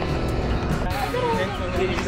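Indistinct background voices over a low, steady rumble of outdoor ambience.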